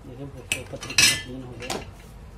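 Metal ceiling-fan parts clinking against each other on a workbench: three sharp strikes, the loudest about a second in with a brief metallic ring.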